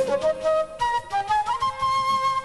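Concert flute playing a short solo phrase that steps upward to a long held high note, with the band's bass and drums dropped out beneath it.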